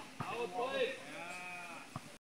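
People shouting and calling out during an outdoor volleyball game, with one long, wavering call through the middle. A short knock from the ball being struck comes just after the start, and another near the end.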